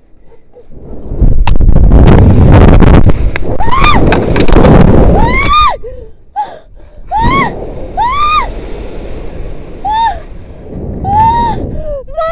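Wind rushing and buffeting over the head-mounted camera's microphone during a rope-jump free fall and swing, loud from about a second in. Over it a woman screams in about six high, rising-and-falling shrieks.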